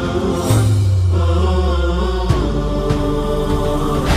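Intro theme music with sustained tones over a deep low drone; the bass note changes about half a second in and again a little past two seconds.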